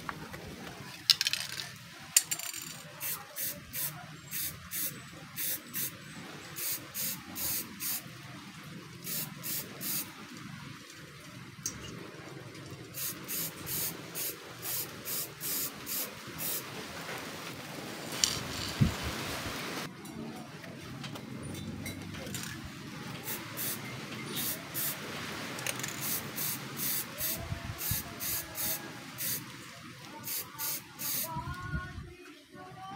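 Aerosol can of clear coat spraying in short hissing bursts, about two a second in runs with pauses between, and one longer unbroken spray of about two seconds around two-thirds of the way through. A couple of sharp knocks sound near the start.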